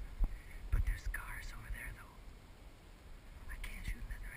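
Hushed whispering in two short spells, one about a second in and one near the end, with a couple of low soft thumps early on.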